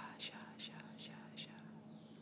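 Faint whispered vocal syllables of light language: about five short hissy bursts in the first second and a half, fading, over a steady low hum.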